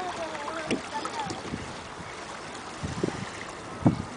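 Wind buffets the microphone over a steady wash of shallow sea water, with a few low thumps and a sharper one near the end. A voice trails off right at the start.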